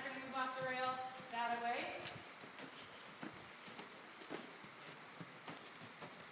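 Hooves of a Percheron draft horse walking on soft dirt arena footing: dull, irregular thuds about twice a second, plain from about two seconds in.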